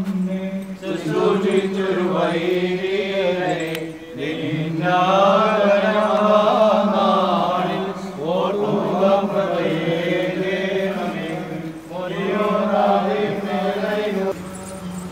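Liturgical chanting by voices in an Orthodox church service, sung in long phrases over a steady held low note, with brief pauses between phrases about every four seconds.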